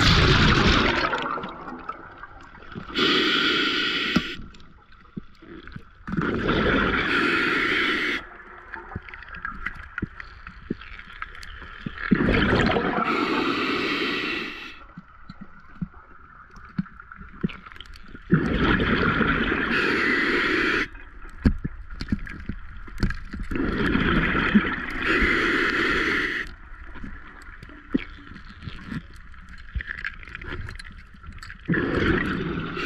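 A diver breathing underwater through a scuba regulator: irregular bursts of exhaled bubbles, each lasting a second or two, every few seconds.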